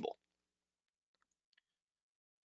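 Near silence: quiet room tone after a spoken word ends, with a few faint clicks about a second in.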